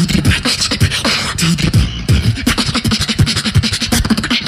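Human beatboxing into a handheld microphone: a dense, fast stream of mouth-made drum strikes, with short deep bass kicks that fall in pitch mixed with sharp snare and hi-hat sounds.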